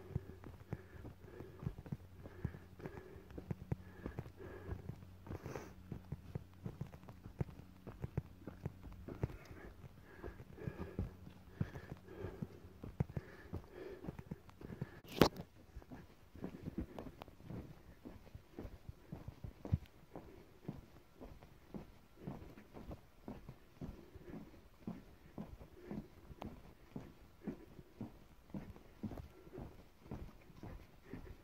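Footsteps of a hiker walking a forest trail at a steady pace, the later steps landing on wooden boardwalk planks. One sharp click about halfway through is the loudest sound.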